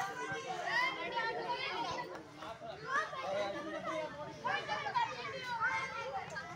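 A group of girls chattering and calling out, several high voices overlapping.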